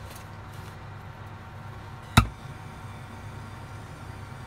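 A hand-held gas blowtorch being lit: a single sharp click-pop about halfway through, over a steady low hum. The torch's gas is running out.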